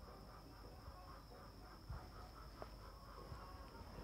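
Near silence: faint room tone with a thin steady high whine and a couple of faint soft knocks.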